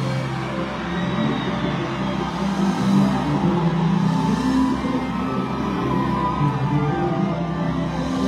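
A live band playing: keyboard, electric guitar and drums, loud and continuous.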